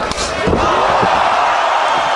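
A kickboxing high kick landing on the head as a single sharp hit, then the crowd cheering loudly at the knockout, with a voice shouting over the cheer.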